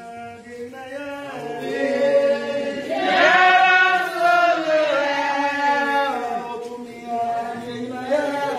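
A group of voices chanting together in a sung, chant-like way, growing louder about three seconds in.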